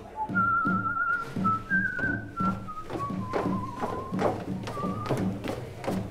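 A person whistling a slow melody with a wavering vibrato, stepping down in pitch, with a short higher note near the end. Under it, bass and drums keep a steady repeating beat.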